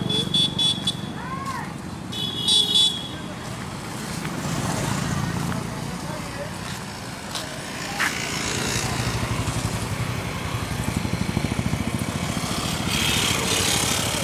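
Street traffic with a motorcycle engine running. A vehicle horn sounds at the start and again about two and a half seconds in, and there is a single sharp knock about eight seconds in.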